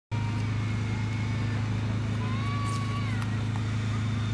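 Two-stroke engine of a backpack motorized mist sprayer running steadily at high speed, a constant loud drone.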